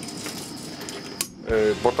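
Small hard objects clinking and rattling as they are handled, ending in one sharp click a little over a second in.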